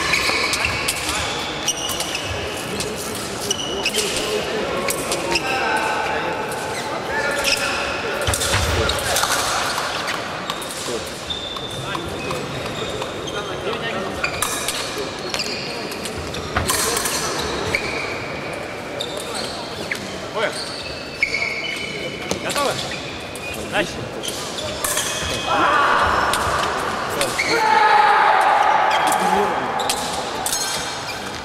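Fencing bout in a large, echoing hall: repeated thuds and stamps of the fencers' footwork on the piste and sharp clicks and knocks, with voices calling out, loudest near the end.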